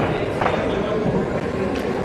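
Steady background murmur of people talking in a busy billiard hall, with a single click about half a second in.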